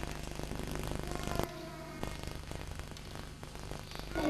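Crackling, rustling handling noise from a hand-held microphone and paper card, over a steady low electrical hum, with a faint voice briefly about a second in.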